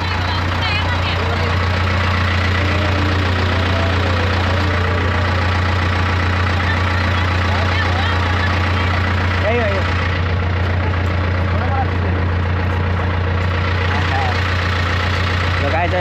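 Bus engine idling steadily with a low, even hum, while people talk in the background.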